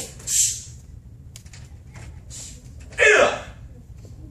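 A sharp hissing exhale shortly after the start, then a loud, short shout about three seconds in. These are a taekwondo practitioner's breath and kihap shout, which go with the strikes of the drill.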